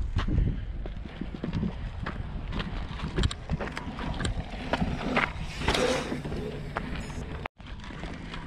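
Footsteps on a dry dirt trail, irregular crunches and knocks, over a low rumble of wind on the microphone. The sound cuts out for a moment near the end.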